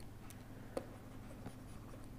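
Faint taps and scratches of a stylus writing a word on a tablet screen, a few light clicks spread through the moment.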